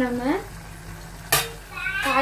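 A single sharp clink of metal cookware about a second and a half in, with a brief ring after it.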